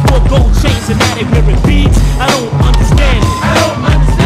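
A hip-hop track playing with a steady beat, with skateboard sounds mixed in: the board popping and landing on concrete.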